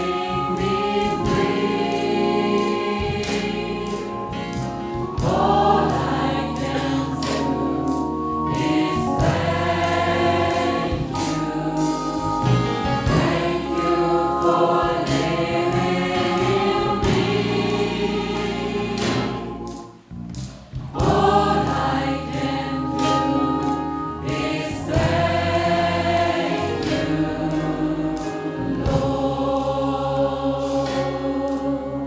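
Gospel choir singing in full harmony with a live band of keyboard, drums and guitar. The music breaks off for a moment about two-thirds of the way through, then comes back in.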